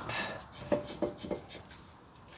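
A few light metal clicks and taps as a stock caliper bolt and the Brembo caliper are handled against the steering knuckle.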